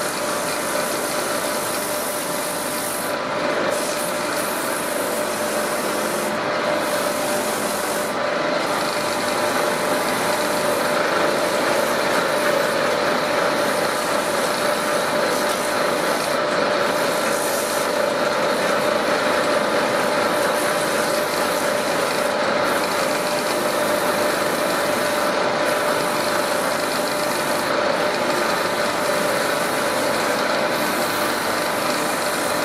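Wood lathe running steadily while sandpaper is held against the spinning teak plate: a continuous rubbing hiss over the lathe's even hum.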